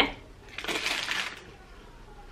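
A short paper rustle and handling noise, about a second long, as a round handmade solid shampoo bar is taken out of its paper wrapper.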